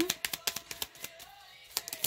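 A deck of cards being shuffled by hand: rapid, irregular soft clicks and flicks, sparser about halfway through, over faint background music.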